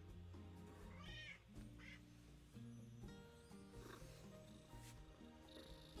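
A domestic cat meowing faintly a few times, the clearest call about a second in, over quiet background music.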